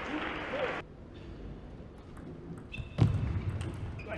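Table tennis rally in an arena: a few light clicks of the ball on bat and table, then about three seconds in a sudden loud knock followed by a burst of crowd noise as the point ends.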